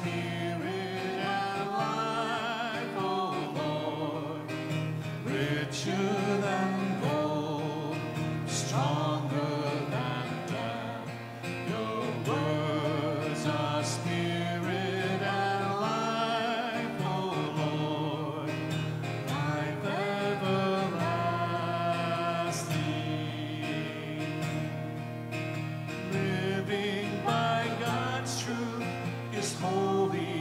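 A sung hymn: a singing voice with vibrato over guitar accompaniment.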